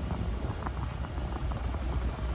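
Ram TRX's supercharged 6.2-litre Hemi V8 and road noise heard inside the cabin as a steady low drone while the truck holds an even speed of about 40 mph.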